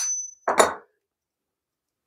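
Sharp taps on a wooden shoulder plane to knock its wedge loose and take it apart. The first tap rings out with a thin high ring, and a second tap lands about half a second in.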